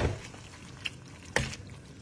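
A utensil knocking on an aluminium frying pan of pasta: two sharp knocks about a second and a half apart, with faint wet squishing of the pasta in oil between them.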